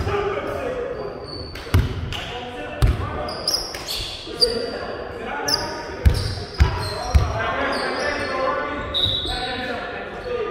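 Irregular thumps of a volleyball on the hardwood gym floor, about eight in all, with short high squeaks of sneakers on the court and players' voices echoing in the large hall.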